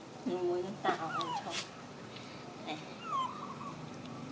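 Young macaques giving short, high-pitched whimpering squeaks that slide down in pitch, in two bouts about two seconds apart.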